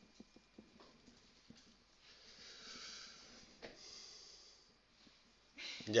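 Marker writing on a whiteboard: faint quick taps and short strokes, then two longer hissing rubs of the felt tip across the board, with a sharp tap between them.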